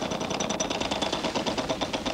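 Game-show prize wheel spinning, its pointer clicking rapidly and evenly against the pegs around the rim.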